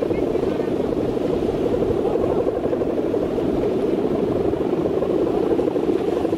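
Balinese kite hummer (guangan), the bow strung across the top of a large bebean kite, droning steadily as it vibrates in strong wind, with a fast flutter in the drone.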